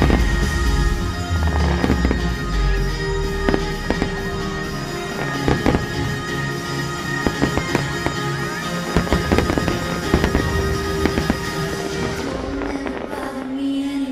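Aerial fireworks bursting in many sharp bangs and crackles over the show's music soundtrack. The bursts thin out near the end.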